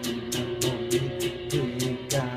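Electric guitar strummed in a steady rhythm, about four strokes a second, with the chord ringing between strokes.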